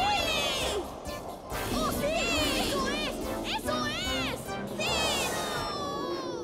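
High-pitched cartoon children's voices cheering and laughing in several short wordless bursts, over background music.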